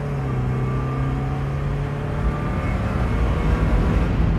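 Mazda NA Miata's four-cylinder engine with a resonator-deleted exhaust, heard from inside the cabin while accelerating hard through the gears. A steady engine note holds for about two and a half seconds, then gives way to a louder, noisier rumble.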